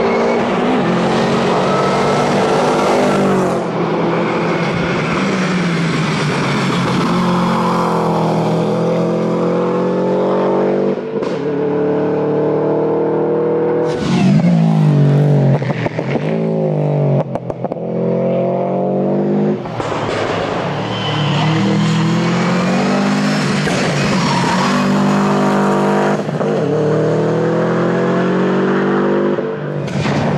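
Subaru Impreza rally car's flat-four engine driven hard, its pitch rising as it accelerates and falling again at each gear change or lift for the turns, many times over. The engine note breaks up choppily a couple of times in the middle.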